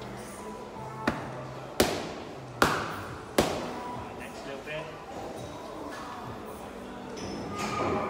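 Boxing gloves striking focus mitts: four sharp smacks about three-quarters of a second apart early on, over background music.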